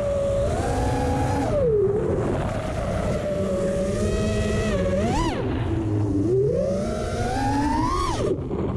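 FPV quadcopter's brushless motors whining, pitch rising and falling with the throttle: a quick sharp blip about five seconds in, and a long climb near the end that drops away. A rough low rush of wind and propwash runs underneath.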